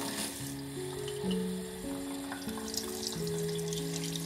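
Tap water running in a thin stream into a kitchen sink, a steady hiss, over soft background music of slow held notes.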